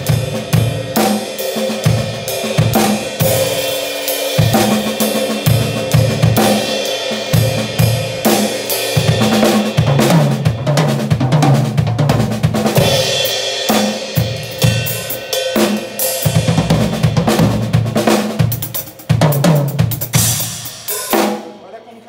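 Acoustic drum kit playing a fast gospel-chops lick: rapid, dense strokes spread across snare, hi-hat, toms and bass drum, with cymbal crashes, played with the dynamics brought down for a softer feel. The playing stops about a second before the end.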